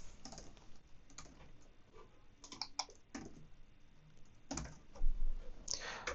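Typing on a computer keyboard: scattered single keystrokes and short runs of clicks, with a louder knock about four and a half seconds in.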